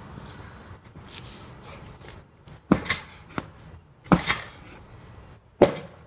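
A steel tomahawk chopping into the padded leather backrest of an office chair: three sharp strikes about a second and a half apart, the last the loudest.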